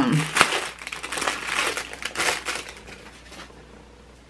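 Packaging crinkling and rustling in the hands as a scarf headband is unwrapped, a quick run of irregular crackles that dies away about three seconds in.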